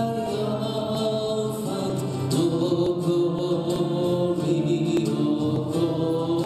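A small church choir singing a slow hymn, the voices holding long notes.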